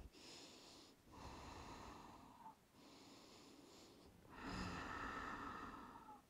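Faint, slow, deep breathing held in child's pose: four long breaths in and out, each lasting a second or more, the last the loudest.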